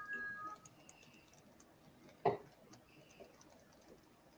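Quiet room sound: a short steady two-pitch tone fading out at the very start, then a single sharp click about two seconds in, with a few faint ticks around it.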